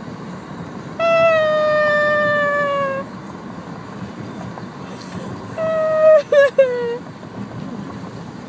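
A young woman wailing as she cries, in two long drawn-out cries: the first slides slightly down in pitch, and the second breaks into sobs near its end. She is upset over a lost hair tie and still groggy from the anaesthetic after having her wisdom teeth pulled.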